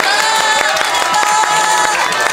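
Audience cheering with scattered clapping, many voices calling out together at once.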